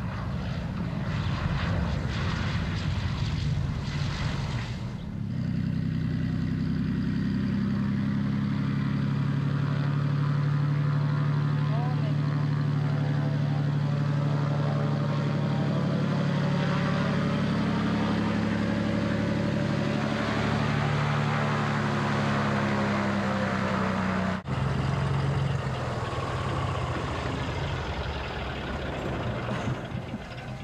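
A V-tail Beechcraft Bonanza's single piston engine and propeller, rolling out after landing and then taxiing at low power with a steady, even drone. The sound cuts out for an instant about 24 seconds in, then the idling engine carries on.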